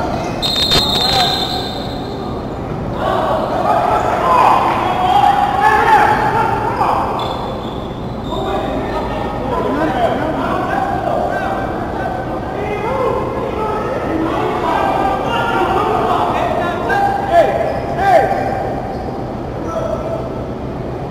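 Basketball game sounds in an echoing gym: a ball bouncing on the hardwood court under a steady hubbub of overlapping voices, with a few sharper knocks, two of them louder near the end.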